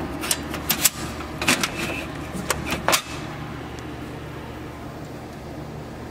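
Vending machine's bottle-dispensing latch and mechanism clicking and clunking as a whiskey bottle is released, a series of sharp knocks in the first three seconds. A steady low hum runs underneath.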